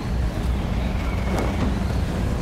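Steady low rumble of a B-17 bomber in flight heard from inside the aircraft, the drone of its radial engines mixed with rushing wind, as a film soundtrack.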